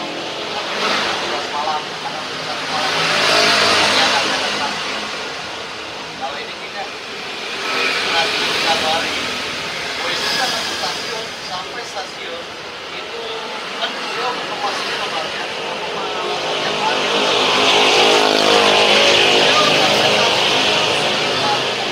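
Road traffic passing close by: vehicles swell up and fade away one after another, with the longest, loudest pass near the end. Low conversation runs underneath.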